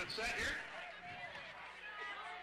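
A man's commentary voice trailing off at the start, then faint background voices.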